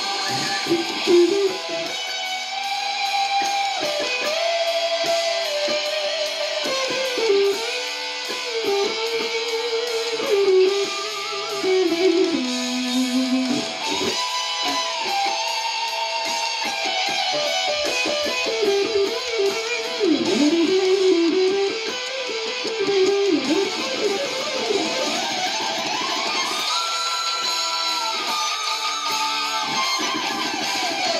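Electric guitar playing a fast lead solo over a recorded metal band track, the melody bending and sliding between held notes. The guitar is a little out of tune.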